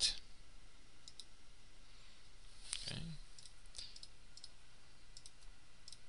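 Computer mouse button clicks: several separate single clicks spread across a few seconds, the first and sharpest right at the start.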